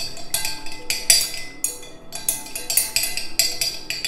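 A spoon stirring melted cacao butter and almond oil in a glass measuring jug, clinking quickly and repeatedly against the glass, about four or five clinks a second.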